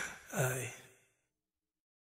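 A breathy male vocal ad-lib: a rush of breath followed by a short sigh that falls in pitch. The track then fades to silence about a second in.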